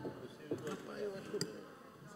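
Faint voices talking away from the microphone, with two light knocks, about half a second in and about a second and a half in.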